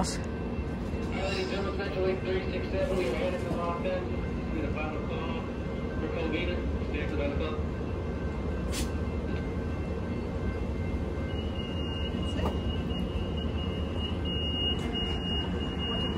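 Steady low rumble of a Metrolink commuter train standing at the platform, with faint voices in the first half. From about eleven seconds in, a high, thin warning tone sounds and keeps going with short breaks.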